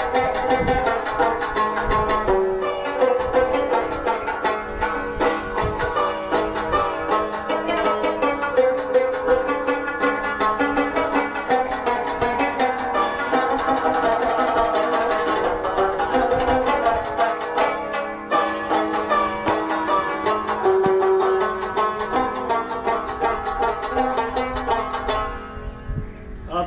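Rubab played solo: a fast, continuous run of plucked notes in a traditional melody, with strings ringing on underneath.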